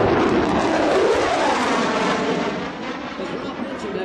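Jet noise from an F-22 Raptor's two afterburning turbofans on a high-speed pass, a loud rushing that slowly dies away over the last second or so.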